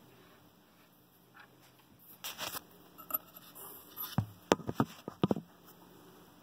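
Faint handling noises of fingers working thread into the needle-bar thread guide of a sewing machine. A brief rustle comes a couple of seconds in, then a run of small sharp clicks over the next second and a half.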